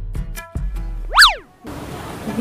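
Cartoon-style comedy sound effect over a bass-heavy music track: a few short clicks and brief notes, then, about a second in, a loud whistle-like tone that sweeps sharply up in pitch and straight back down.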